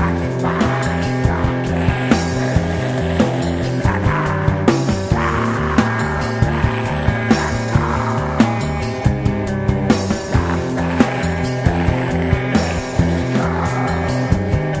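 Black/death metal band playing: heavily distorted electric guitars and bass chugging through rapidly changing low notes over fast, frequent drum hits.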